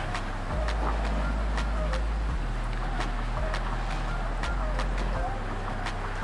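Steady low rumble of background noise, with scattered light clicks and faint voices in the distance.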